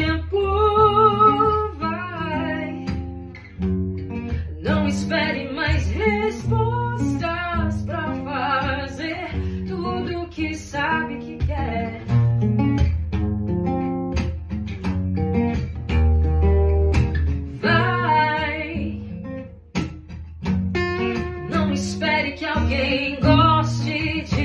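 A woman singing over two acoustic guitars being strummed, a live duo performance.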